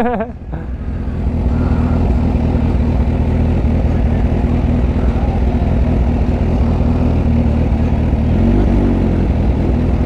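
Kawasaki Ninja H2's supercharged inline-four running steadily at low revs while the motorcycle rolls slowly at walking pace.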